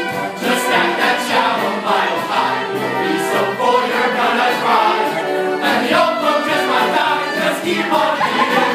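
A group of men singing a comic show tune together with instrumental backing, the sung notes shifting steadily over the accompaniment.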